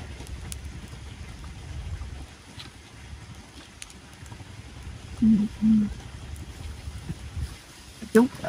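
A few faint metallic clicks of tongs and a spoon on clam shells over a charcoal grill, over a low steady rumble. A little past halfway come two short hummed vocal sounds.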